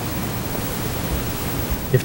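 Steady hiss of background noise, even and unchanging.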